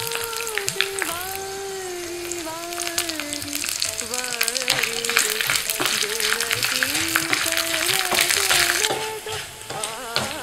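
Tempering of mustard seeds, dal, cashews, dried red chillies and fresh curry leaves sizzling and crackling in hot oil in a small pan, with a wooden spatula stirring it through the second half.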